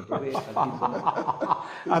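A man chuckling: a quick run of short laughs that trails off near the end.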